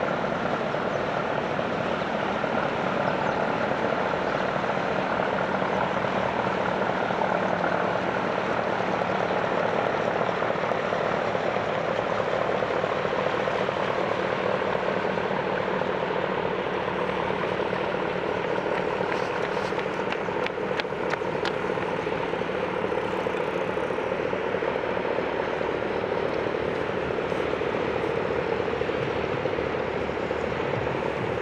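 Steady engine drone of cargo ships on the river, with a few faint clicks a little past the middle.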